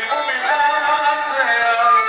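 Live band music: a man sings a wavering melodic line into a microphone over a bowed violin, played loud through stage speakers.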